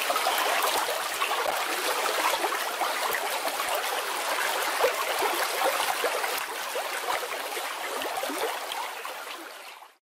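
Running water, a steady bubbling and trickling like a stream, fading out near the end.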